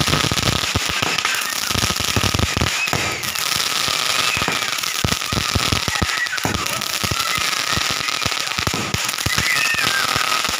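Fireworks going off in a dense run of crackling pops, with a few faint whistles that rise and fall.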